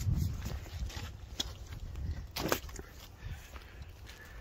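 Wind rumbling on the microphone, with a few scattered clicks and knocks from footsteps on a path, the strongest about halfway through.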